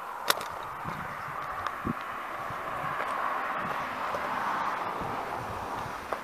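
Handling noise of a video camera being lifted off its tripod and carried: a sharp click near the start, a few soft knocks, and a steady rushing hiss.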